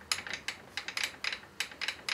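Milling machine table being wound along by its handwheel, the crank and leadscrew giving a quick, uneven run of clicks, about six a second.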